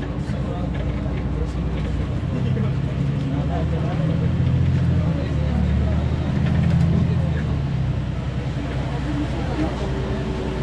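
A bus engine and running noise heard from inside the passenger cabin while the bus drives along. The engine drone grows louder for a few seconds in the middle, then settles. Faint passenger voices can be heard in the background.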